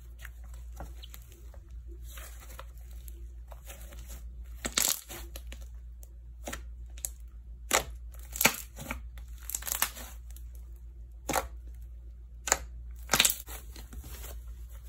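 Slime being stretched, folded and pressed by hand, giving crackling, tearing sounds and a string of sharp sticky pops, the loudest clustered in the second half. A low steady hum runs underneath.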